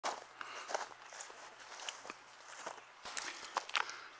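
Footsteps of a person walking while filming: soft, irregular steps, fairly faint.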